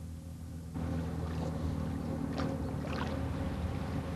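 Water splashing and sloshing as nets of young trout are dipped and emptied into shallow water, starting about a second in, over a steady low hum from the old film's soundtrack.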